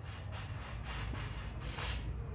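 Aerosol lubricant sprayed through a thin straw onto a motorcycle handlebar lever's pivot: a few short hisses, the last one the longest and loudest, near the end.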